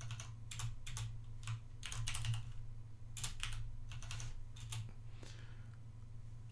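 Computer keyboard typing: irregular keystrokes, about two a second with short pauses, over a steady low hum.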